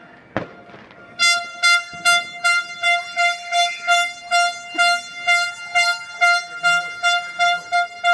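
A horn blown in a long run of short, even blasts, about two and a half a second, all on one steady pitch. A single sharp knock comes just before the blasts begin.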